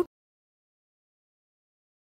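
Dead silence: the soundtrack cuts out completely right after the last syllable of an announcer's voice at the very start.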